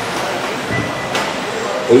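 Radio-controlled 4WD off-road cars racing on an indoor dirt track in a large hall: a steady wash of motor and tyre noise, with one sharp knock a little over a second in.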